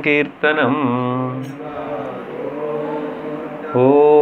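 A man's voice chanting a devotional mantra into a microphone, in long held, wavering notes; the chant softens for about two seconds in the middle and comes back up loudly near the end.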